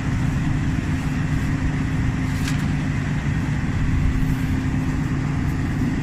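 An engine idling steadily, a low even drone with a steady hum. One faint click comes a little before halfway through.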